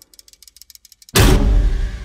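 Movie trailer sound design: faint, fast ticking for about a second, then a sudden loud, deep boom that fades out.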